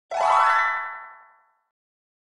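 A single cartoon-style sound effect: one pitched tone that starts suddenly, bends upward at first, and fades away over about a second and a half.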